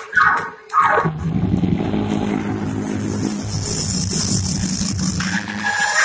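Live gospel music from the church band and choir: a steady held low chord with drums and a wash of cymbals coming in about two seconds in, after two falling vocal shouts in the first second.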